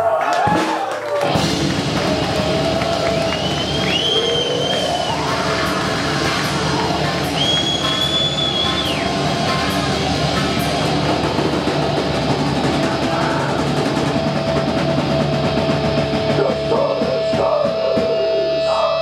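Death metal band playing live and loud: distorted guitars over dense, fast drumming, with two high, held squeals about four and eight seconds in.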